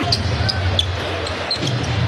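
A basketball being dribbled on a hardwood arena court, with short, sharp high squeaks scattered through and a steady low arena crowd noise underneath.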